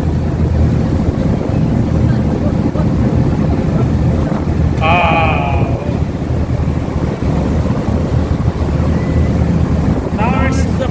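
Motorboat engine running steadily, with wind buffeting the microphone. A brief voice cuts in about five seconds in.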